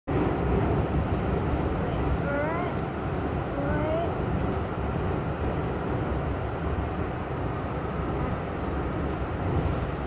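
A New York City subway train running steadily through a tunnel, heard from inside the car as a continuous rumble.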